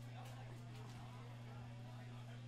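A steady low electrical hum from the stage amplification starts suddenly and holds unchanged, over faint crowd chatter.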